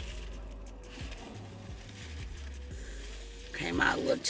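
Low steady hum inside a car's cabin, with a few faint clicks and rustles from handling a plastic bottle of fake blood and a paper napkin. A voice begins near the end.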